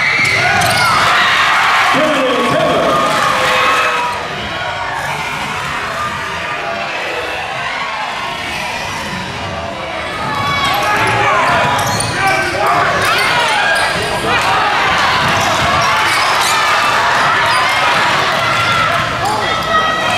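Live game sound of a high school basketball game in a gym: a ball dribbling on the hardwood, sneakers squeaking and voices from players and crowd. It is quieter for a few seconds in the middle before picking up again.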